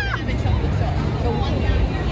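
Crowd hubbub: many people talking at once, with a steady low rumble underneath.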